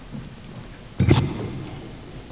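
Paper handled close to a lectern microphone: one brief rustle and thump about a second in.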